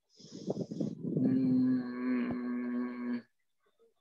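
A breathy hiss, then a single long call held at one steady pitch for about two seconds.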